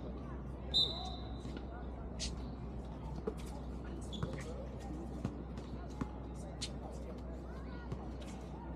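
Basketball bouncing on an outdoor hard court during play, with scattered knocks and a short high squeak about a second in, over faint distant players' voices and a steady low background hum.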